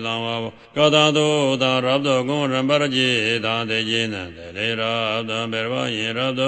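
One male voice chanting a Tibetan Buddhist tantra in a steady, continuous recitation, with a short break for breath just after half a second in.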